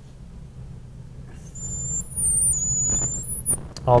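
Marker squeaking on a glass lightboard while a long horizontal line is drawn. It comes as two high-pitched squeals of about a second each, over a low steady hum.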